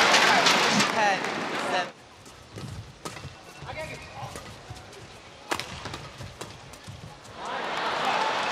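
Arena crowd noise that cuts off about two seconds in, then a badminton rally in a hushed hall: sharp racket hits on the shuttlecock. Crowd cheering swells near the end as the point is won.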